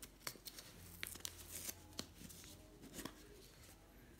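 Quiet scattered scratches and light clicks of a kraft cardboard tube box being opened by hand, its seal picked and peeled at the lid's edge and the lid pulled off.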